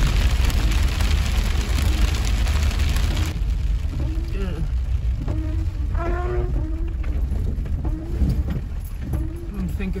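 Heavy rain drumming on a Jeep Wrangler's windshield and roof, heard from inside the cab over the low rumble of the Jeep driving a wet dirt road. The rain noise is heavy for about the first three seconds, then drops off to a lighter patter. Short pitched sounds come and go in the second half.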